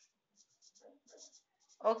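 Marker pen writing words on a white surface, a quick series of short strokes.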